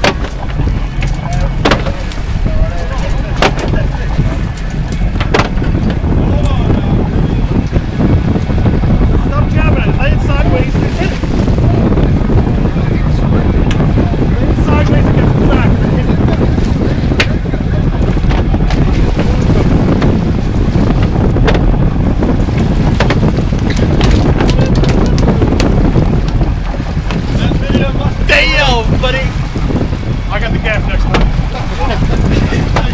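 Boat engine running steadily under heavy wind noise on the microphone and water wash, with a few sharp clicks. Voices call out briefly near the end.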